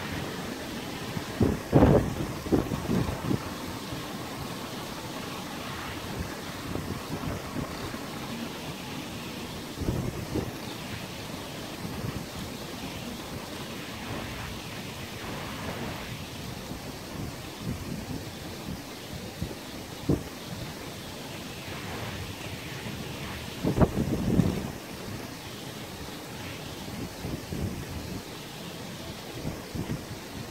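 Wind buffeting the microphone in irregular gusts over a steady hiss of wind and sea waves, with two strong low buffets, one near the start and one about three-quarters of the way through.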